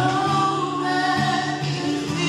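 A woman singing into a handheld microphone, amplified through the hall's sound system, over low musical accompaniment. Her voice slides up at the start and then holds long notes.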